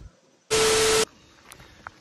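A half-second burst of loud hiss with a steady buzzing tone inside it, starting and stopping abruptly: an editing sound effect laid over the cut to a new segment.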